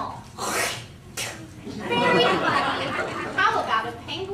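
Speech: actors' voices talking on a stage, with a short, sharp, breathy burst about half a second in.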